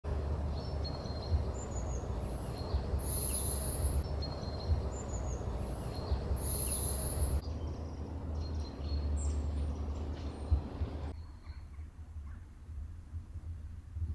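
Outdoor ambience: birds calling with short high chirps, over a low wind rumble on the microphone. The sound drops in level about seven seconds in and again about eleven seconds in.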